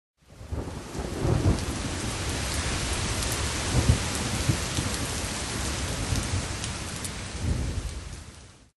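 Rain and thunder: a steady hiss of rain with low rolls of thunder swelling about a second in, near the middle and near the end.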